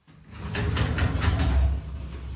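Framed sliding glass shower door rolling along its metal track: a low rumble with a quick run of clicks from the rollers.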